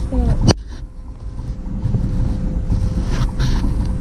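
Camper van driving slowly, its engine and road noise heard as a steady low rumble from inside the cab. A brief squeak and a click come about half a second in.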